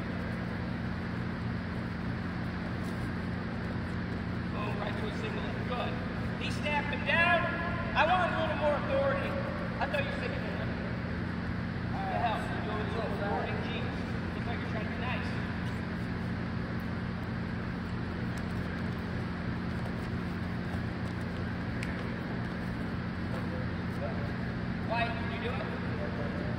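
A steady low hum runs throughout, with people's voices talking at times. The voices are busiest about seven to ten seconds in and come back briefly near the end.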